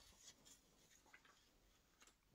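Near silence: room tone with a few very faint, soft rustles.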